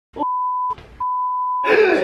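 Two steady, single-pitch bleep tones of the same pitch, the first about half a second long and the second about three-quarters of a second, cutting over a man's voice, which is faintly heard between them; the man's voice then comes in plainly near the end.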